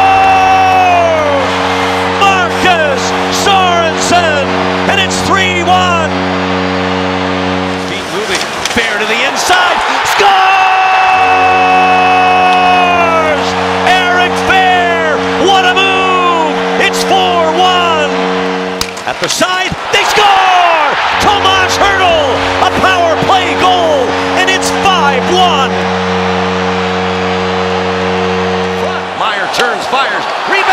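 The San Jose Sharks' arena goal horn sounds three times, each blast a steady, deep tone held for about eight seconds and cut off sharply, over crowd cheering and goal music.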